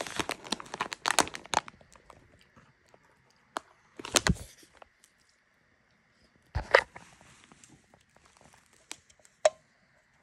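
Crinkling of a plastic snack bag as a hand reaches into it, dense for about the first two seconds. Then a few short separate rustles about four and seven seconds in, and a sharp click near the end.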